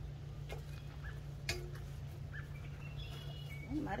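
Outdoor background: a steady low hum with a few faint, short bird chirps scattered through it.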